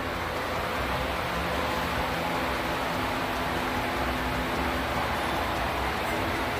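Steady rushing background noise with a faint low hum.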